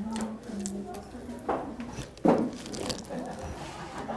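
Soft lumps of margarine being pressed and dropped by hand into a plastic bowl, with soft squishes and one louder thud a little past two seconds in. Voices are heard in the background.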